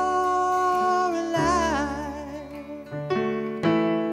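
A man singing a slow song over electric piano chords. A held note wavers with vibrato, slides down and fades about halfway through, and then new keyboard chords are struck twice near the end.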